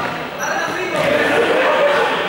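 Students' voices chattering in a large, echoing sports hall, with a ball bouncing on the hard floor.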